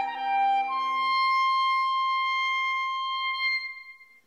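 Viola and clarinet playing a slow chamber-music duo. The lower notes stop about a second and a half in, leaving one long high note that is held and then fades out near the end.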